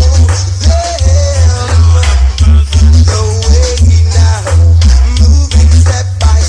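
A reggae record played loud through a sound system at a dance, with a heavy pulsing bassline and a singer's voice over it.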